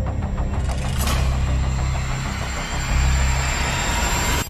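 Film-trailer sound design: a deep, heavy low rumble runs throughout. Over it, rapid pulses give way about a second in to a dense, noisy swell of tension.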